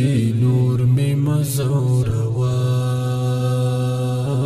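Pashto tarana: sung male vocals over a steady low humming drone. A little over halfway through, one note is held for about two seconds.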